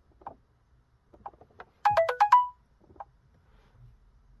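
A short electronic notification jingle about two seconds in: about five quick stepped notes going down and up, ending on a briefly held higher note. A few faint taps come before and after it.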